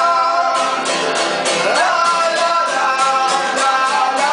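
Live acoustic band: a male voice singing a melody over steadily strummed acoustic guitars.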